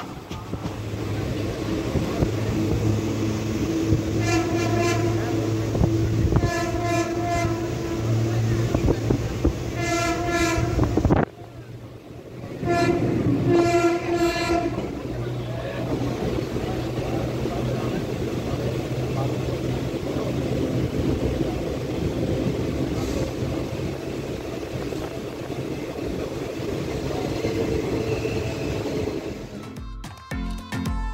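Passenger train running at speed, with a steady rumble of wheels on the rails and wind at an open door. A train horn sounds four blasts of one to two seconds each in the first half, and the running noise briefly drops away just before the last blast.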